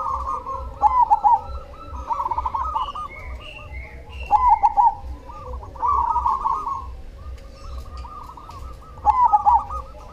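Zebra dove (perkutut) cooing in its characteristic song: about six bursts of rapid, trilled coos, repeated every second or two, with a pause from about seven to nine seconds in.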